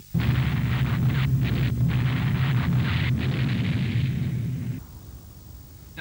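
Heavy anti-aircraft gunfire and explosions as a dense, continuous rumble. It starts abruptly and drops away about five seconds in.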